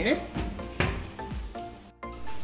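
Background music with a singing voice, with a brief knock of a countertop oven door being closed.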